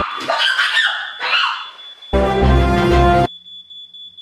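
Smoke alarm sounding one steady high-pitched tone, under music with a heavy bass. The music cuts out over a second before the end, leaving the alarm sounding alone.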